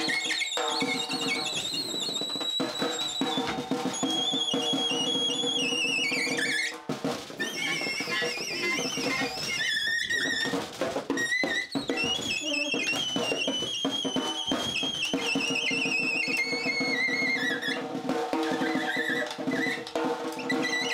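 Free-improvised alto saxophone and snare drum duet. The saxophone holds long, piercing high squeals that slowly bend downward in pitch, over irregular snare drum hits with sticks.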